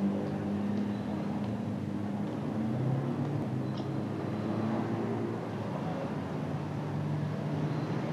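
A steady low rumble of background ambience with a few held low tones humming through it.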